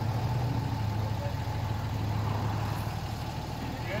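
Pickup truck engine idling with a steady low hum while the truck backs slowly under a truck camper to load it onto the bed.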